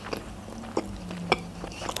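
Close-miked chewing of a mouthful of sushi roll: a few short, wet mouth clicks, the loudest a little past halfway.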